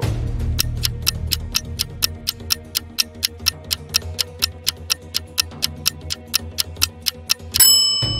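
Clock-tick countdown sound effect, about four ticks a second over background music, timing the pause to answer a riddle. A bell-like chime rings near the end, marking time up.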